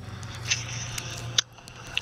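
Phone line opening on speakerphone as the call is answered, after the ringback tone cuts off: a faint hiss with a few short clicks, about half a second, a second and a half, and two seconds in.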